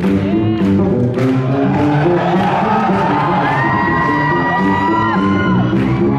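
Live funk band recorded from the audience, with a repeating electric bass line to the fore and drums mostly falling back in the middle. Audience members whoop, and a long whistle is held about halfway through.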